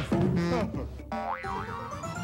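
Show transition music with a comic cartoon sound effect: a springy tone whose pitch slides up and down twice, about a second in.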